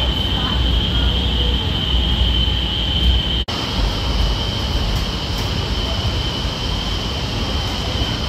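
Cabin noise of the Honolulu Skyline driverless train car running along its elevated track: a steady low rumble with a constant high-pitched whine over it. The sound cuts out for an instant about three and a half seconds in.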